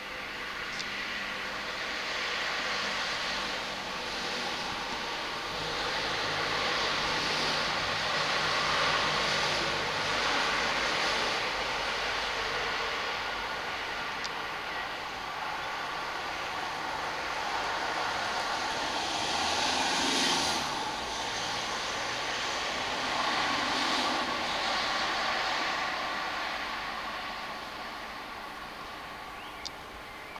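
A continuous mechanical rumble and hum with several steady held tones, typical of vehicle noise, slowly swelling and easing in loudness, loudest about a third of the way in and again two-thirds in.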